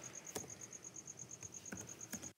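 A cricket chirping steadily in the background: a high, thin note pulsing about ten times a second. A couple of faint keyboard clicks come through as well.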